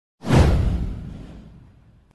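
A whoosh sound effect with a deep boom underneath, starting suddenly a moment in and fading away over about a second and a half, its hiss sliding down in pitch as it fades.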